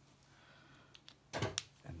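Quiet room, then about halfway through a single short scrape-and-knock of hands handling things on a wooden board with a plastic sheet on it.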